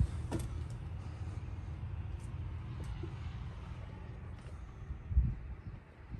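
A low steady rumble inside a truck cab, with a few faint clicks and creaks and a soft thump about five seconds in, as the camera is moved from the seats back toward the sleeper.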